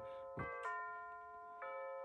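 Electronic chime of a Bulova C3542 quartz chiming clock, set off as the hands are turned forward: a few bell notes ring and overlap, a new one entering about half a second in, another just after, and a third past the middle, all faint.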